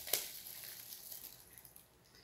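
A thin plastic bag crinkling faintly as a plastic lid insert is handled, with one sharp plastic click just after the start.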